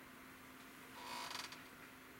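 A short creak, about half a second long, about a second in, over a faint steady hum.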